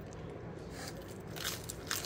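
Crispy Domino's thin pizza crust crunching as it is bitten and chewed: three short crunches in the second half, the last two the loudest.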